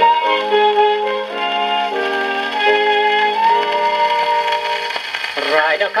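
Small orchestra on a 1929 shellac 78 rpm record played through a wind-up portable gramophone, an instrumental bridge of held melody notes with no bass, thin and boxy. A male tenor voice comes back in near the end.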